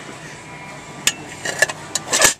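Metal pot and lid being handled, giving a few light clinks from about a second in to near the end.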